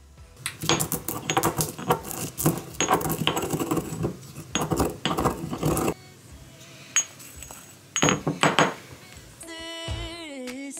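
Marble pestle grinding and knocking in a marble mortar: a run of quick stone-on-stone clinks and scrapes for several seconds, a pause, then a shorter burst near the end.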